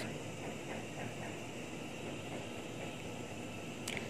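Steady background noise: an even, low hiss of room noise with no distinct events.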